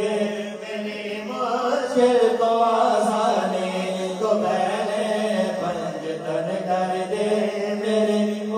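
Male naat reciters chanting a salam, an Urdu devotional poem, with no instruments. The voices sing long, drawn-out melodic lines over a steady low held note.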